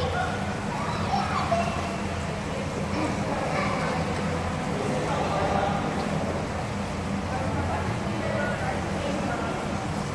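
Indoor swimming pool ambience: indistinct voices and children's chatter over a steady low hum.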